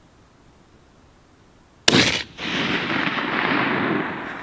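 A single rifle shot from a Sig Sauer Cross in 6.5 Creedmoor about two seconds in: a sharp crack, then a long noisy tail that carries on for a second and a half or more.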